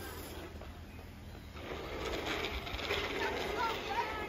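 A young girl's voice, calling out or singing without clear words, over outdoor background noise that grows louder about one and a half seconds in.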